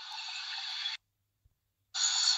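Thin, tinny football-broadcast sound with no clear commentary, which cuts out abruptly to dead silence about a second in and returns at an edit about a second later.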